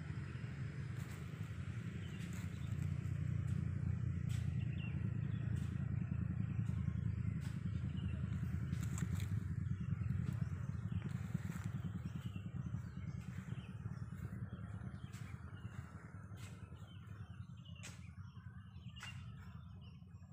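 A motor engine's low rumble that grows louder over the first few seconds and then slowly fades away, with scattered short high chirps or clicks above it.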